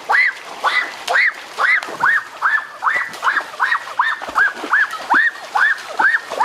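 An animal calling over and over: a short note that rises and falls, about twice a second, very regular. Under it, water splashing as someone wades through a shallow stream.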